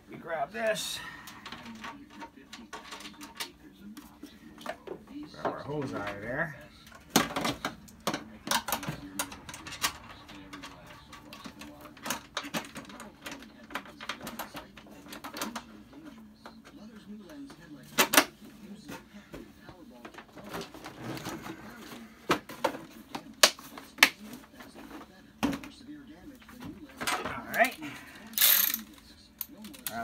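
Irregular clicks, taps and knocks of hand work on a plastic windshield washer reservoir being handled and fitted into place in the engine bay, with one sharper knock about 18 seconds in.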